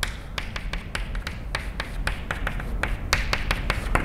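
Chalk writing on a blackboard: a quick, irregular run of sharp taps and short scrapes as symbols are written.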